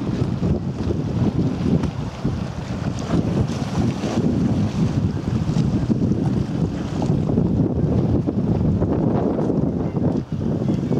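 Wind buffeting the camera's microphone: a loud, low rumble that rises and falls throughout.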